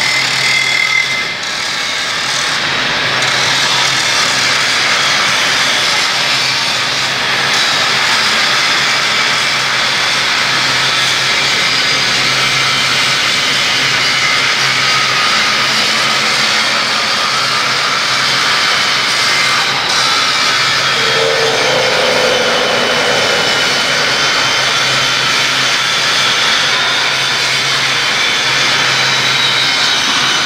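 Handheld electric angle grinder grinding steel, a loud, steady whine with grinding hiss that runs on without a break.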